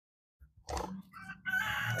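A rooster crowing, starting about a second in, with a held, pitched call in the last half second.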